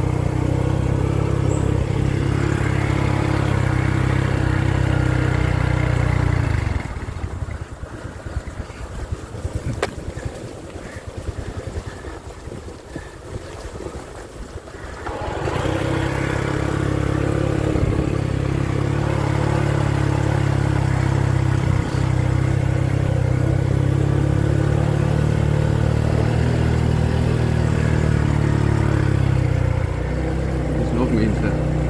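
Small motor scooter engine running steadily under way, dropping to a much quieter, uneven rumble for about eight seconds in the middle before pulling steadily again.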